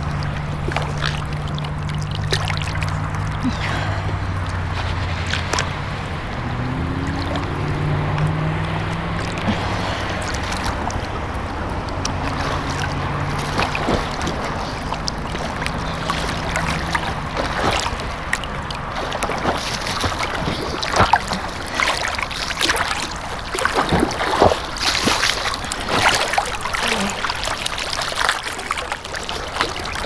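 Lake water sloshing and splashing right at a camera held at the surface, the splashes growing sharper and more frequent in the second half as a swimmer's freestyle strokes come close. Under it in the first half runs a steady low drone of a distant motorboat engine, which rises in pitch briefly about a third of the way in and then fades out.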